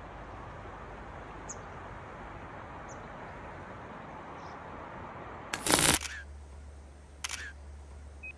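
Shallow River Dee running over stones, a steady rush of water with a few faint high chirps above it. About five and a half seconds in, a loud, sharp burst of noise lasts half a second. After it the water sound is gone, leaving a low steady hum and a single click.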